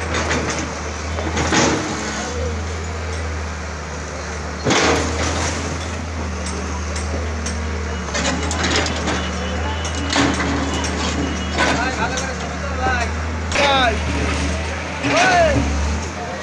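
Diesel engine of a CAT backhoe loader running steadily while its bucket breaks down a brick building, with sharp crashes of masonry every few seconds. A crowd of voices carries on throughout.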